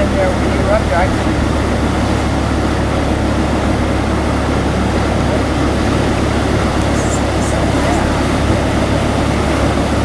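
Steady rush of water pouring through the sluices of the upstream lock gates as the lock chamber fills, over the low, even running of the boat's idling engine. A voice is heard briefly at the start.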